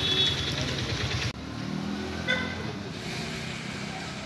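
A motor vehicle engine running with an even pulse, then cutting off abruptly about a second in. After it comes a quieter street background with low voices.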